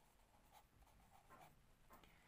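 Near silence with the faint scratching of a felt-tip pen writing on paper, a few short strokes.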